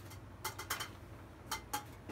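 A few light clicks in two small clusters, one about half a second in and one about a second and a half in, over a faint steady low hum.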